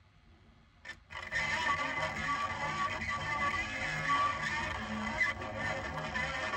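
The tip of a knife blade set down on a spinning vinyl record in place of a stylus: a click just under a second in, then the record's music playing from the groove through the blade.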